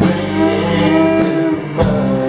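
Guitar chords strummed and left ringing, with a fresh strum at the start and again near the end.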